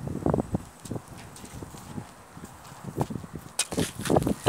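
Irregular light knocks and scuffs on dry, stony ground, thinning out in the middle, with a sharp click a little past three and a half seconds in.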